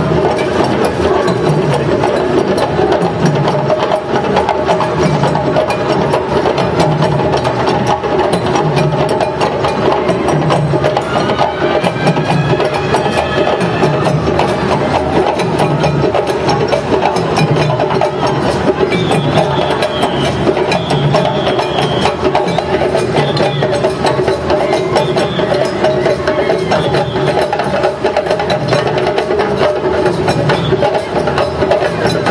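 A group of djembe hand drums playing a fast, dense rhythm together, with a deeper drum beat recurring about once a second.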